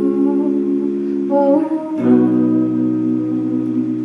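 Electric guitar playing held chords that ring out, changing chord about halfway through, with a soft wordless vocal line over it.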